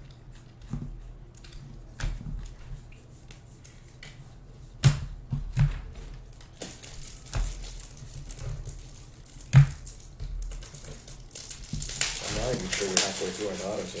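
Paper baseball trading cards being flipped off a stack by hand: a run of soft clicks and slides, with a few sharper knocks. A man's voice comes in near the end.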